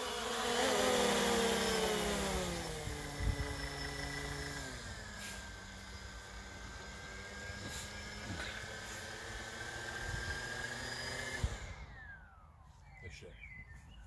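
DJI Phantom 3 Standard quadcopter's four motors and propellers whirring with the aircraft on the ground. The pitch drops over the first few seconds, then holds steady. About 12 seconds in the motors spin down and stop on their own, not by the pilot's command.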